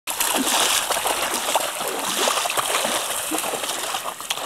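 A pharaoh hound running through shallow water, its legs splashing steadily.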